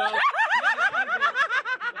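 Burst of laughter from several people, led by a woman's high-pitched laugh in quick rhythmic peals, about five or six a second.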